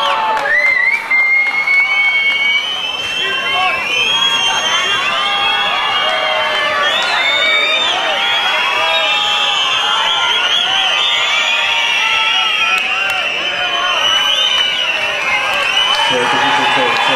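Large stadium crowd shouting and cheering without a break, many high voices and whoops overlapping.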